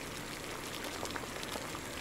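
Chicken tinola broth with green papaya and chicken pieces boiling in a pot, a steady bubbling with faint small pops.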